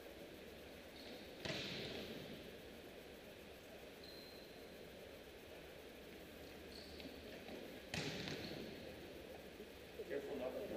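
Two sharp volleyball impacts about six seconds apart, each ringing on in the big arena's echo, with a few faint brief squeaks between them.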